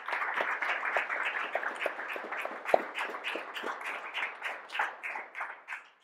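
Audience applauding: many people clapping at once, the clapping thinning to a few scattered claps and dying away near the end.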